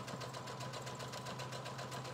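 Electric sewing machine stitching steadily through layered flannel quilt squares: a steady motor hum with the needle's fast, even clatter.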